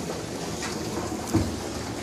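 Water running steadily from the feed line into a plastic roof-cleaning tank as it fills, with one short low knock about a second and a half in.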